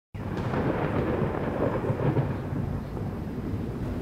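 Rolling thunder: a continuous low rumble that starts just after the beginning and swells and eases without a break.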